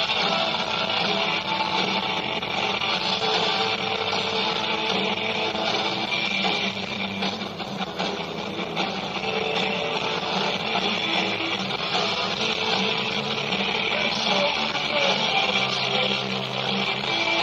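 A rock band playing live, with electric guitars, bass and drums.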